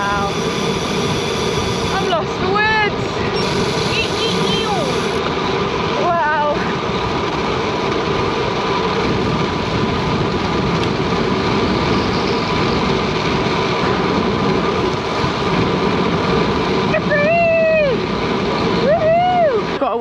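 Strong wind noise on the camera's microphone during a fast bicycle descent, with the rider giving a few short whoops that rise and fall in pitch, two of them near the end.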